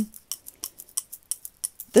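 Beaded bracelets on a working wrist clicking and jingling in quick, irregular ticks while a glue stick is rubbed over paper.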